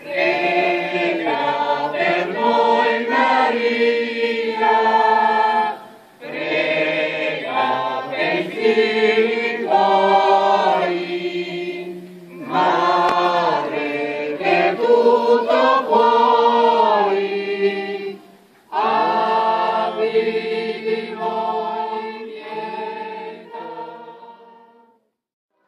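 A choir singing a hymn in four long phrases of about six seconds each, with short breath pauses between them; the last phrase fades out at the end.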